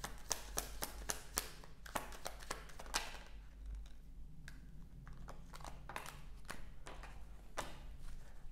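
Tarot cards shuffled by hand: a quick run of light card slaps and clicks for the first three seconds, then sparser, softer ones.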